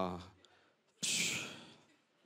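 A man's drawn-out "uh" trailing off, then about a second in a long exasperated sigh blown into a handheld microphone, starting suddenly and fading away.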